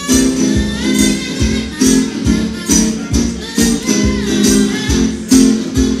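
Live amplified folk-punk music: a harmonica in a neck rack played over a strummed resonator guitar, with a steady beat about twice a second.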